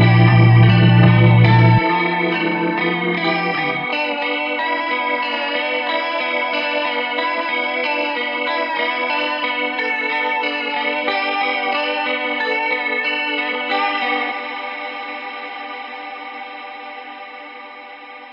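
Electronic music played on an Elektron Octatrack run through effects. The bass cuts out about two seconds in, leaving a dense layer of sustained, guitar-like tones. Near the end this thins to a held chord that fades out steadily as the track ends.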